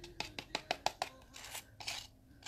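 Thick paint mix being stirred with a chip brush in a container: a quick run of short taps and scrapes, about six a second.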